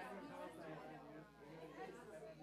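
Indistinct chatter of several people talking at once in a room, no single voice standing out.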